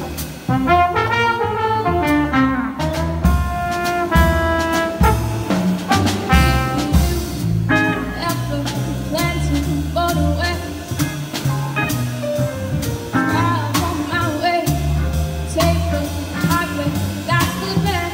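Small jazz combo of piano, upright bass, drum kit, electric guitar, alto saxophone and trombone playing a swing tune, with held horn notes at the start and a young female vocalist singing the melody over the band through the rest.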